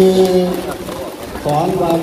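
Speech only: a man's voice speaking Thai through a microphone, drawing out one syllable at a steady pitch for about half a second at the start, then speaking again near the end.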